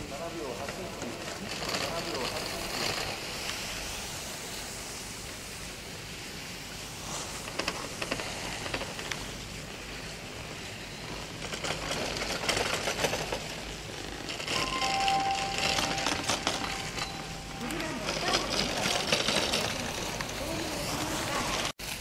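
Ski edges scraping and carving on hard-packed snow as giant-slalom racers turn past, heard as several swelling rushing scrapes, the loudest about twelve seconds in. Faint distant voices sit under it.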